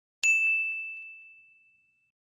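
A single bright bell ding, the notification-bell chime of an animated subscribe button. It strikes about a quarter second in on one clear high tone and fades away over about a second and a half.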